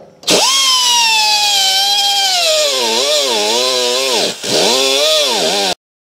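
Pneumatic cut-off wheel running loud, grinding through rusted steel at the exhaust flange behind the catalytic converter, throwing sparks. Its high whine sags in pitch and wavers as it cuts, drops out briefly near the end, picks up again and then cuts off suddenly.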